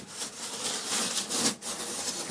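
Large knife blade slicing along the taped top of a parcel, a rasping cut that runs about a second and a half, breaks off briefly, then starts again.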